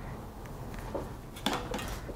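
Quiet room tone with one brief sharp click about one and a half seconds in.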